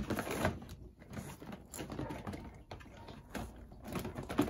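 Irregular light clicks, taps and rattles of small hard objects being handled and moved about, as someone rummages through a collection of plastic action figures.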